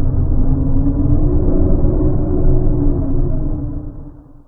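A loud low rumble with a faint steady tone running through it, starting to fade out near the end.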